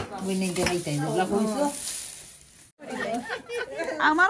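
A woman talking, with a sharp click at the very start; the sound drops out briefly about two-thirds of the way through, then talking resumes.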